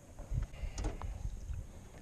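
A few light knocks and low thumps as a caught largemouth bass is handled and lowered over the side of a boat into the water.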